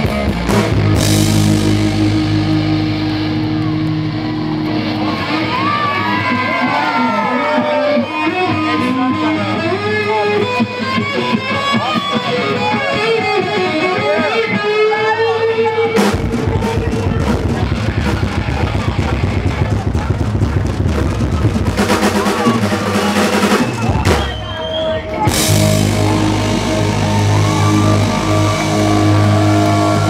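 Live hard rock band playing through a PA, heard from the crowd: electric lead guitar soloing with many string bends over bass and drums. About halfway through, the whole band comes in heavier and denser, drops out briefly, then returns with held chords.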